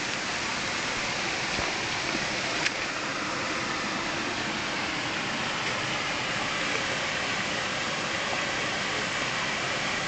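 Small waterfall: water rushing over stones in a narrow stream channel, a continuous, even rush.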